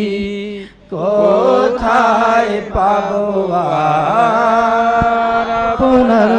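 Bengali devotional song sung in long, wavering held notes over a steady low held tone. The singing breaks off briefly about a second in, then the next line begins.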